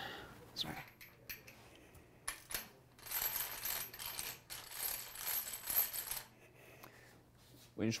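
Hand tools being handled at an engine block: a few light metal clicks, then about three seconds of high, jingling metallic rattle, as a socket and ratchet are fitted to the crankshaft bolt.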